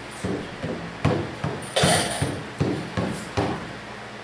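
Hand-held frame drum beaten in a steady beat of roughly two to three strikes a second, with one louder strike near the middle; the beat stops shortly before the end.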